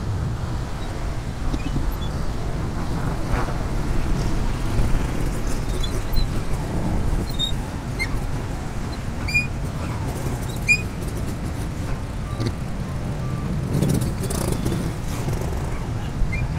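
Motorcycle tricycle running through slow city traffic, heard from the passenger seat: a steady engine and road rumble, with the sound of other motorcycles and cars around it and wind on the microphone.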